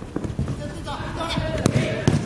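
A futsal ball being played on artificial turf: a few light thumps of touches and footfalls, then one sharp kick near the end, with players shouting faintly across the court.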